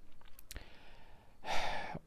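A man sighing close to the microphone, a breathy swell near the end, after a small mouth click about half a second in.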